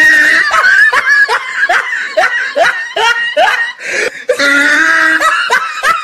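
Loud human laughter: a long run of short, pitch-swooping 'ha' bursts, about two to three a second, with a longer held vocal sound in the middle.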